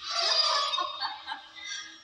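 A man laughing, loudest right at the start and trailing off over about a second, with soft music underneath.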